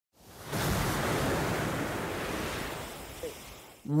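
Heavy sea surf breaking against rocks: a dense rushing wash of waves and spray that fades in over the first half second and dies away near the end.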